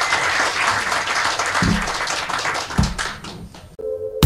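Audience applauding, steady, dense clapping, cut off near the end by electronic music.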